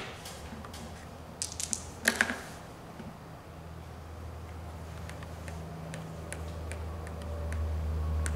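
Playing cards and pieces handled on a Clue game board: a sharp click at the start, a quick cluster of clicks and a rustle about two seconds in, then scattered light ticks. Under them runs a low hum that swells toward the end.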